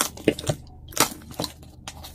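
Cardboard box being opened by hand: flaps lifted and pressed down, with a few short crackles and taps.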